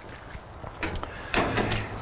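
A few brief knocks and clatters of kitchen items being handled, about a second in and again near the end, over a low background hush.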